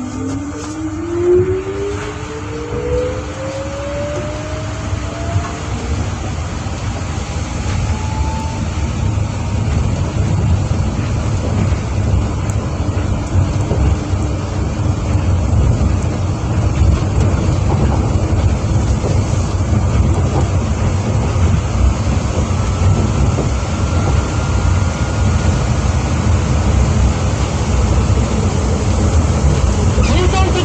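New Shuttle 1050-series rubber-tyred people mover heard from on board, pulling away and accelerating: the traction motor's whine climbs steadily in pitch over the first eight seconds or so, over a low tyre-and-guideway rumble that grows louder as the train gathers speed. A second, fainter rising whine comes in about two-thirds of the way through.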